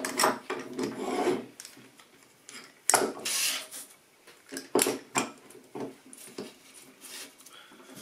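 An old steel bar clamp being fitted and tightened on a pine board with a scrap block under its jaw: scattered knocks of wood and metal, with a scraping rub about three seconds in.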